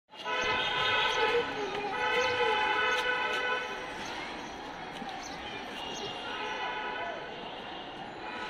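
A vehicle horn sounding two long, loud blasts in the first three and a half seconds, then fainter horn blasts later, over city street noise.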